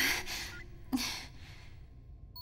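A cartoon character's voice: a breathy exhale trailing off, then a short, sharp gasp about a second in.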